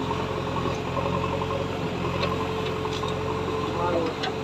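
JCB 3DX backhoe loader's diesel engine running steadily while the backhoe digs soil, with a steady higher tone over the engine drone. A few faint ticks come in the second half.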